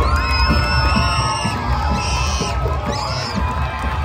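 Marching band music with heavy drums, over a crowd cheering and yelling, with a few high shrill screams.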